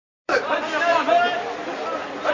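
A crowd of men talking and calling over one another, starting a moment in.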